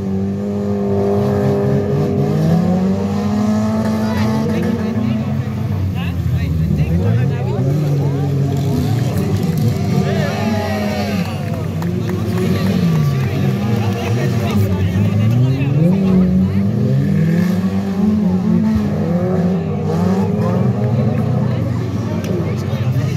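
Several stock car engines revving on a dirt track, their pitch climbing and dropping every second or two as the cars accelerate and lift off.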